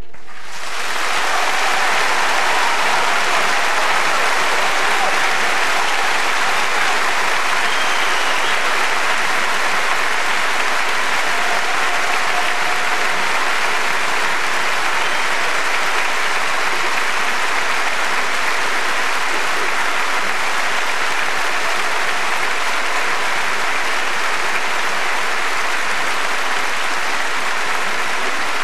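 A large concert-hall audience applauding. The applause starts the moment the song's last note ends, swells within about a second, and then holds steady and thick.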